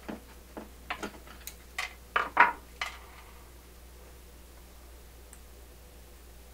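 A quick run of light clicks and knocks from hands working a screwdriver and power cord against the wooden cabinet of a record player. The loudest is a pair of knocks about two and a half seconds in. After that only a low steady hum is left.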